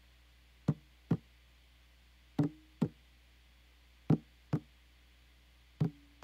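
A sparse drum part playing back on its own: pairs of sharp, knock-like hits, the second about half a second after the first, with each pair repeating roughly every 1.7 seconds. Some hits carry a short low ring.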